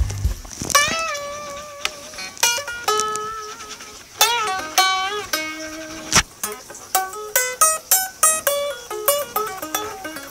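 Fender Standard Stratocaster HSS electric guitar played unplugged, with single picked notes. Some are held with vibrato and bends, then a quicker run of notes steps down in pitch near the end. The new guitar is almost in tune.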